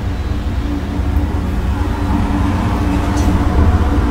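A steady low rumble with a constant hum, loud and unbroken throughout.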